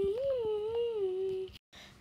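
A girl's voice humming one long note that wavers up and down in pitch and stops about one and a half seconds in.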